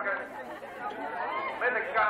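Chatter of a crowd of onlookers, several voices talking at once with no clear words.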